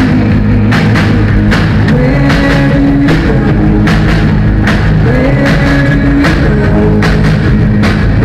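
A rock band playing live: a drum kit keeps a steady beat, about two hits a second, under guitars, in a loud, rough-sounding recording.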